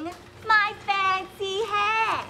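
A woman singing a short run of high, held sing-song notes, the last one sliding down in pitch.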